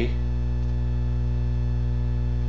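Steady electrical mains hum with a ladder of fainter higher overtones, unchanging and fairly loud.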